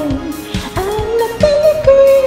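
Karaoke singing: one voice holding and sliding between notes of a Japanese pop song over a backing track with a steady drum beat.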